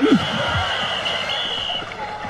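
A board and its rider splash into water: a loud splash at the start, then a wash of churning water that fades over about two seconds, with a thin high held tone over it.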